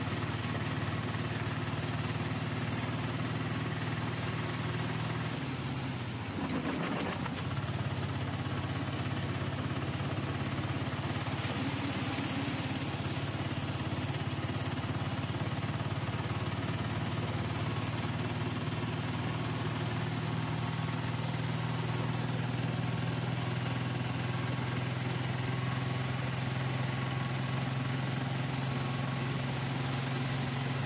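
Bus engine running steadily, heard from inside the cabin; its pitch drops about five seconds in and climbs back again a second or two later.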